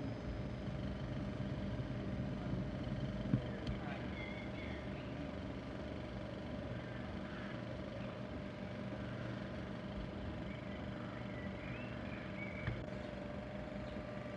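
A steady low mechanical hum, with a few faint high chirps over it and a single click a few seconds in.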